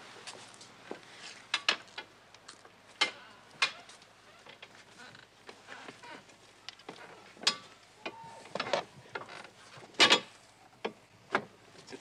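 Scattered sharp clicks and knocks at irregular intervals over a low steady background, the loudest about ten seconds in.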